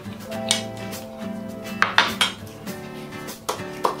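A spoon clinking against a bowl while eating, about five sharp clinks, three of them close together in the middle, over background music.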